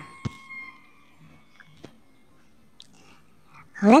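A quiet pause in speech holding a few faint clicks, the sharpest just after the start and a smaller one near the middle. A woman's voice starts speaking near the end.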